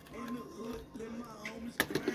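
Faint background voices, with one sharp click near the end.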